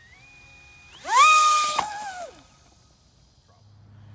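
Electric pusher motor and propeller of an SAB Tortuga RC plane: a faint whine, then about a second in a sudden throttle-up to a loud high whine with a rush of air. Its pitch drops abruptly and it fades within about half a second as the plane leaves the launcher.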